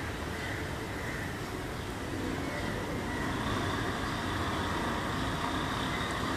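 Steady outdoor background noise with a low rumble, like distant road traffic.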